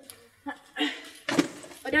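Burlap sack rustling and handling noise as a small potted Christmas tree is picked up, with two short vocal effort sounds from the person lifting it.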